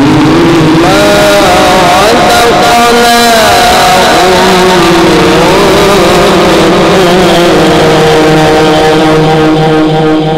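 A man's voice in melodic Quran recitation, loud through a microphone, singing long held notes that glide and bend slowly between pitches.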